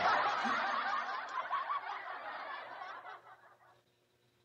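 Laughter lasting about three and a half seconds, coming in right after a sharp click and trailing off shortly before the end.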